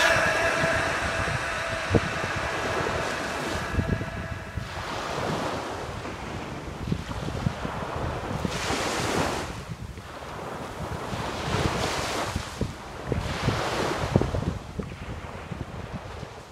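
Small surf breaking and washing up a sandy beach, swelling twice in the second half, with wind rumbling on the microphone.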